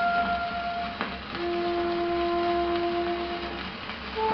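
Old 78 rpm shellac record of a flute solo playing on a turntable. Two long held notes of the opening, the second lower, sound over steady surface hiss, with a click about a second in.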